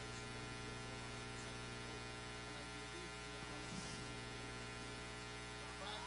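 Steady electrical mains hum with a buzz, a low tone and its many overtones held constant under the audio. Nothing else stands out above it.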